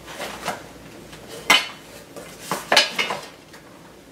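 A few sharp clicks and clatters of a small cardboard box and the plastic items inside it being handled and opened, the loudest about one and a half seconds in.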